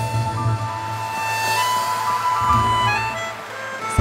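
A small live band plays the closing bars of a song: a wind instrument holds a long high note over double bass, acoustic guitar and drum kit. Audience applause starts to build under the music toward the end.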